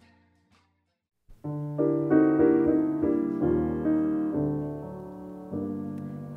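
Near silence, then piano music begins about a second and a half in: a run of sustained chords that slowly grows quieter.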